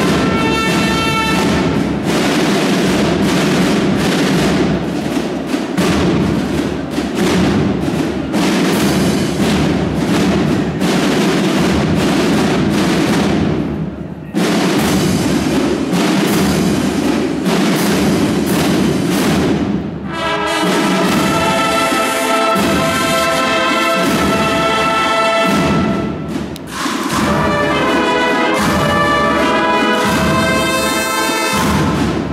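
Brass band of trumpets, trombones and tuba, with drums, playing a march in a large stone church. For the first twenty seconds or so, rapid drum strokes stand out over low held brass, broken by a short gap about fourteen seconds in. From about twenty seconds the brass takes up a clear melody.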